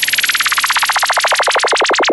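Electronic synthesizer sweep effect in a DJ mix: a fast warbling zigzag of pitch, many sweeps a second, the wobble slowing and reaching lower in pitch as it goes.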